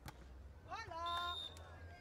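A single sharp smack of a volleyball being struck at the net. About three-quarters of a second later a woman shouts once, high-pitched, her voice rising and then held for about half a second, typical of a player calling out as the point is won.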